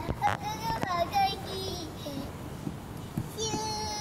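A toddler's high-pitched wordless vocalising: short wavering squeals in the first second or so, then one long held sing-song note near the end. A couple of sharp knocks come right at the start.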